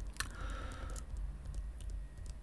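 A few sharp clicks of computer keys being pressed, the loudest a fraction of a second in, over a faint steady low hum.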